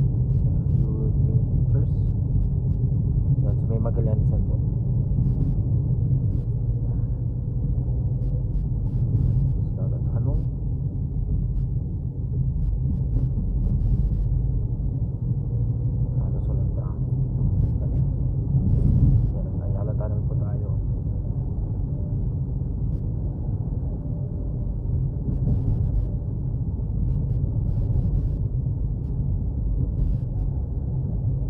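Steady low rumble of a car's engine and tyres heard from inside the cabin while driving, with a brief louder swell a little past halfway.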